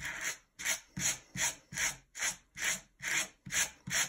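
A wire-pin hand brush drawn repeatedly through a lock of mohair fibre: about ten quick scratchy strokes, roughly two and a half a second.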